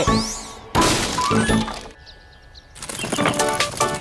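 Cartoon soundtrack. A sudden crash like something breaking comes about three-quarters of a second in and fades away. After a short lull, music with quick repeated notes starts near three seconds.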